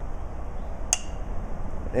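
A single sharp metallic clink with a short ring about a second in: a small rock tossed by hand striking a tin can.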